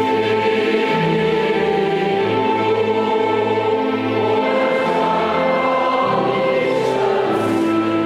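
Church choir singing in harmony, held notes moving chord to chord: the sung memorial acclamation of the Catholic Mass, following the consecration.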